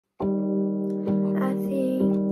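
Music: strummed acoustic guitar chords ringing on, the first struck about a fifth of a second in and the next about a second in, with a sung voice coming in near the end.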